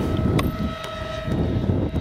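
Steady whine of a model A-10's twin 70 mm electric ducted fans in flight, over wind rumbling on the microphone. A single click comes about half a second in.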